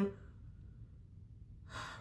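A short pause in a woman's speech: faint room tone, then a quick intake of breath near the end as she gets ready to speak again.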